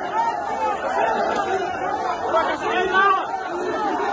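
Overlapping voices of several people talking and calling out at once: a jumble of chatter.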